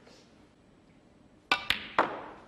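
Snooker balls knocking: three sharp clicks in quick succession about one and a half seconds in, the last the loudest and ringing on briefly.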